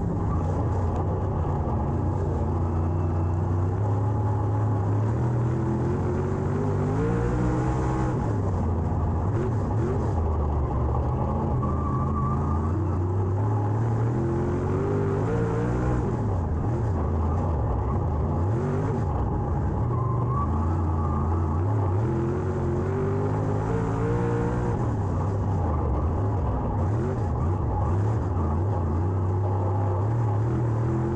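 Dirt late model race car's V8 engine heard from inside the cockpit at racing speed. It rises in pitch down each straight and drops as the driver lifts for the turns, three times about eight seconds apart.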